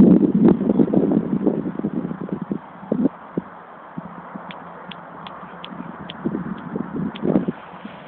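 Irregular rustling and knocking from a handheld camera's microphone, loudest over the first three seconds and again briefly near the end. In the middle, faint short high bird calls repeat about three times a second.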